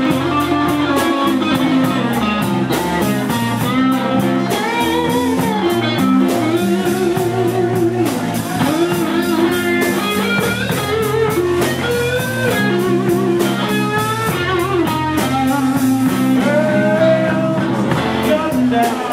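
Live band playing blues-rock: an electric guitar lead with bent, sliding notes over bass guitar and a drum kit.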